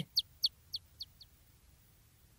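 A newly hatched chick cheeping: about five short, high, falling peeps that fade out over the first second or so.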